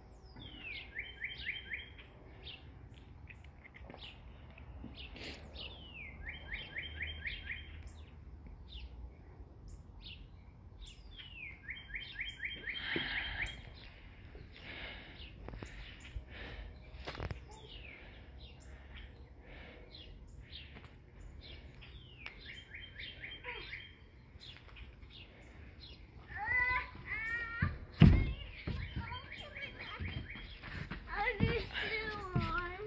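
A songbird singing the same short phrase four times, a downward slide into a quick trill, every several seconds. Near the end comes a single loud thump.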